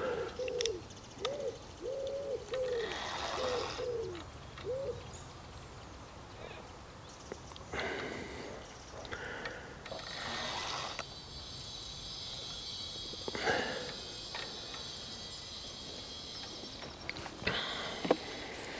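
A bird cooing: a run of short, low, arched notes over the first five seconds, followed by faint scattered handling noises.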